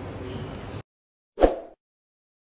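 Steady classroom background noise that cuts off suddenly a little under a second in, followed by one short sound effect from an animated subscribe graphic about a second and a half in.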